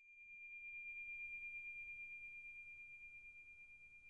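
A single faint, high ringing chime tone, steady in pitch. It swells in over the first second and then slowly fades, with a slight pulsing wobble.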